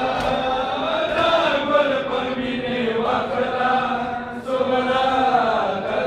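A crowd of men chanting a Pashto noha (mourning lament) together, in long held, slowly bending notes.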